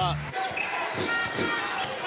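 A basketball being dribbled on a hardwood court, with arena crowd noise.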